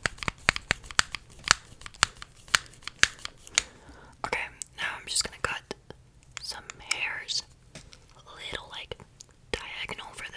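Crinkling and a quick series of sharp clicks from hands handling objects right at the microphone, then soft whispering with pauses from about four seconds in.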